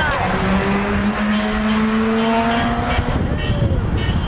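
A motor vehicle's engine running for about three seconds, its pitch rising slowly as it accelerates, then fading out. Voices murmur underneath.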